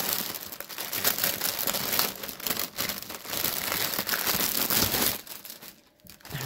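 Clear plastic bag crinkling and rustling in quick bursts as hands open and handle it. The crinkling dies away near the end.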